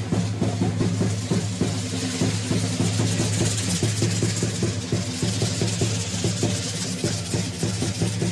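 Dance drum beating a fast, even rhythm, about four beats a second, with many dancers' hand rattles shaking along with it.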